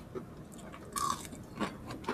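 Close-miked chewing of crispy Bicol Express (fried pork with long beans and chilies), a string of short crunches and mouth clicks, the loudest about a second in.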